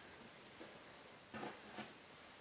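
Near silence, with a few faint soft rustles of wool batting being pressed and tucked by hand, around the middle and near the end.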